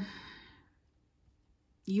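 A soft, breathy exhale trails off the end of a spoken phrase and fades within about half a second. Near silence follows, until talking resumes near the end.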